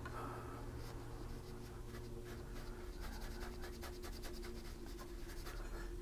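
Watercolour brush stroking and dabbing on paper: a few light strokes, then a rapid run of quick dabs about halfway through that lasts a couple of seconds.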